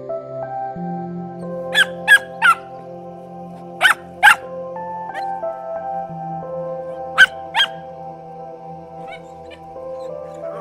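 Puppy barking in short, sharp yaps: three quick yaps, then two, then two more, over soft piano music.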